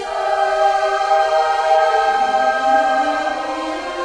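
Choir singing a hymn in long held notes; about halfway through a lower voice line enters and glides upward in pitch.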